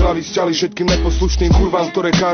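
Hip hop track: rapped vocals over a beat with deep bass notes and kick drums.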